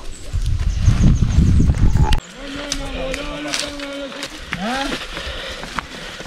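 Wind buffeting the microphone with a deep, loud rumble that cuts off suddenly about two seconds in. It is followed by a long, steady voice-like call and then a short rising one.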